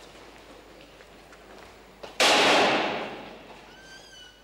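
A barred steel prison gate slams shut: a sudden loud metallic crash about two seconds in that rings on and fades over about a second. A brief high-pitched squeak follows near the end.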